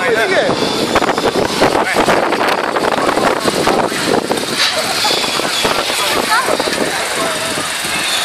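Spectators talking over the running engines of banger racing cars on the track.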